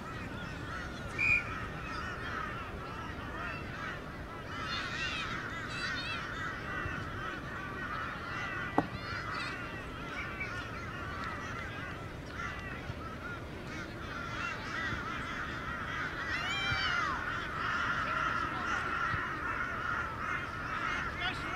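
Many birds calling at once in a dense run of short, overlapping cries, with louder calls about five seconds in and again near the end.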